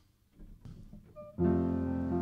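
Quiet for about a second and a half with a few faint sounds, then piano and keyboard come in together with a sustained chord, opening a worship song.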